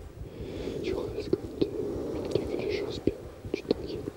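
A man whispering reassurances in French at close range, breathy and soft.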